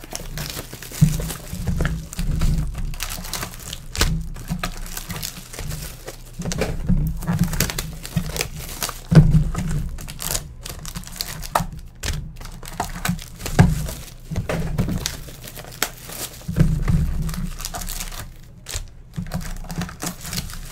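Plastic shrink-wrap being torn and crumpled off trading-card boxes, with irregular crinkling and dull knocks as the boxes are handled on a table.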